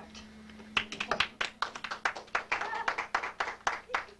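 A quick, irregular run of sharp claps or taps, several a second, starting about a second in and lasting about three seconds, over a steady low hum.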